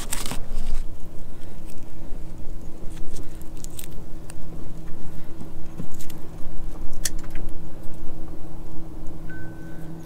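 Steady low hum of the boat's Suzuki outboard motor running, with wind rumbling on the microphone. A few light clicks from fishing tackle being handled, and a brief thin high beep near the end.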